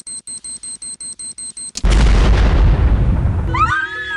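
Rapid high-pitched electronic beeping, about seven beeps a second, cut off about two seconds in by a loud explosion sound effect whose rumble fades away over about two seconds. Music with a sliding, whistle-like tone comes in near the end.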